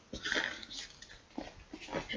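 Zip on a soft fabric lunch box being drawn open in a few short rasps, with light handling of the bag.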